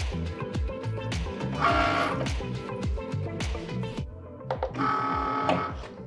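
Cricut Maker cutting machine's small motors running as it finishes the cut and feeds the cutting mat out, with a whine coming and going, over background music with a steady beat.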